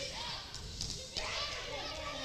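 Faint voices of people in a large, echoing hall, such as a congregation murmuring a response to a greeting, with a light knock about a second in.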